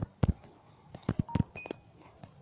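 A few short, sharp clicks, followed a little past halfway by two brief faint beeps, the second higher and slightly longer than the first.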